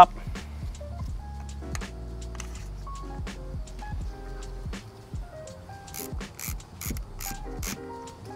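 Background music: a melody of short notes at changing pitches, with a light percussion beat coming in about six seconds in.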